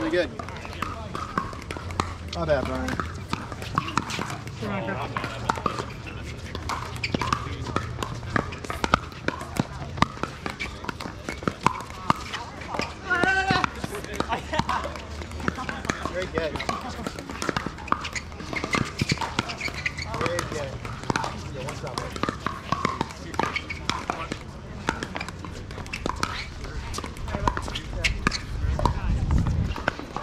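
Pickleball paddles popping against a plastic ball: many short sharp hits scattered throughout, from this and neighbouring courts, over faint voices of other players. A low rumble swells near the end.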